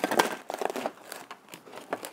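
Hands handling an EPP foam flying wing and its plastic fuselage pod: a string of small plastic clicks and foam crinkles, loudest just after the start and again near the end.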